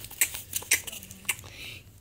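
Acted-out eating noises for a plush toy: several short, crisp clicks and crunches, like munching, made as a toy mushroom is pressed to the toy's mouth.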